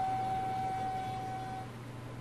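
A flute-like wind instrument holding one steady note, which stops near the end, over a low steady hum.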